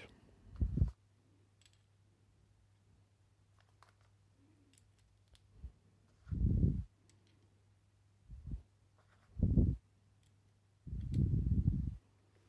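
Hands handling the metal planet-gear carrier and hammer assembly of a cordless impact wrench: faint small clicks of steel parts, with several dull low thumps of handling noise spread through.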